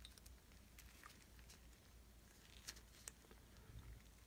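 Near silence: room tone, with a couple of faint clicks late on from gloved hands working a small O-ring off a refrigerant-gauge valve piston.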